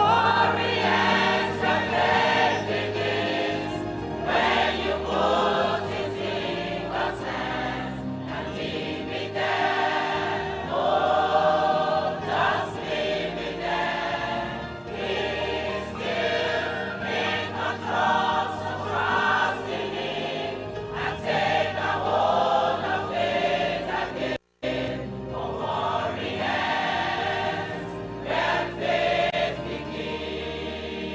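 Gospel choir singing a slow song over instrumental accompaniment, in long sung phrases. About three-quarters of the way through, the sound drops out completely for a fraction of a second, then resumes.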